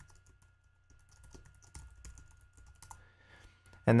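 Typing on a computer keyboard: quiet, irregular key clicks.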